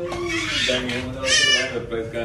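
A person's voice making drawn-out, held sounds rather than words, with a short high-pitched squeal about a second and a half in.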